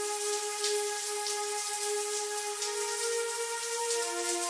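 Soft background music of long held chords that shift about two and a half seconds in, over a faint steady hiss.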